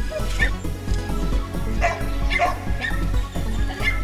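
A dog giving several short yips and barks during rough play with other dogs, heard over background music with a steady beat.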